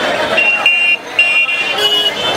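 Busy street traffic with crowd chatter, and vehicle horns beeping three times, the last beep longer.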